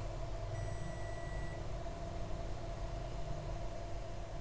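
Steady low electrical hum from repair-bench equipment, with faint background hiss. A faint high tone sounds for about a second shortly after the start.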